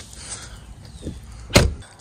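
A Dodge Challenger's passenger door being shut: one solid thud about a second and a half in.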